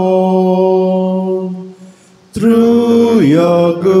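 Hymn singing: a held note fades out a little under two seconds in, and after a brief pause a new sung phrase begins.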